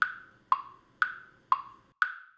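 Wood-block tick-tock sound effect counting off the thinking time for a quiz question: sharp ticks about two a second, alternating higher and lower in pitch.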